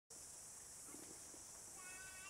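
Near silence: a faint, steady high hiss, with a brief faint pitched call starting near the end.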